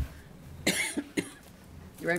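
A person coughs once, a short burst about two-thirds of a second in, followed by a couple of faint clicks.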